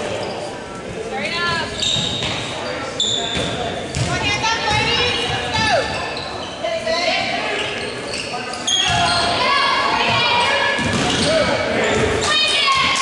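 A basketball being dribbled on a hardwood gym floor, with players' and spectators' voices echoing around a large gymnasium. It gets louder about nine seconds in.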